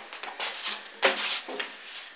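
Irregular rustling and light knocks of an acoustic guitar and clothing being handled close to the microphone as a person moves in front of it, with a stronger knock about a second in.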